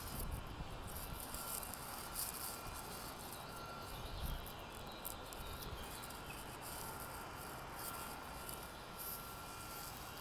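Faint, steady background ambience of an empty open-air stadium terrace, with a thin high tone that fades in and out.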